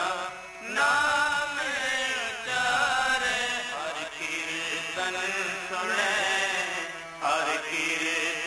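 Sikh shabad kirtan: a male voice singing a devotional hymn with harmonium and tabla accompaniment. The singing breaks off briefly about half a second in and again near the end.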